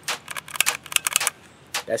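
Sharp metallic clicks from a SIG P320 striker-fired 9mm pistol being worked dry, several in quick irregular succession. The trigger clicks without re-striking, since a striker-fired gun has no double-strike capability and the slide must be cycled to cock it again.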